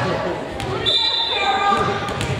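A volleyball bouncing on a hardwood gym floor, a few sharp bounces amid voices echoing in the large gym, with a brief steady high tone about a second in.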